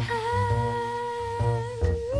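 A female voice holding one long sung note over a jazz trio's accompaniment, with a walking double-bass line underneath.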